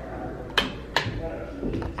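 Two sharp clicks about half a second apart, a wall light switch being flipped while the room light fails to come on.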